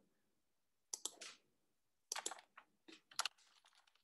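Short runs of sharp clicks, like typing on a computer keyboard: one run about a second in, then several between two and three and a half seconds in.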